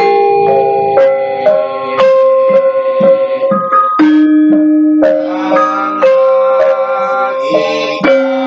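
Javanese gamelan ensemble playing: bronze metallophones and kettle gongs struck in an even pulse of about two strokes a second, each note ringing on under the next.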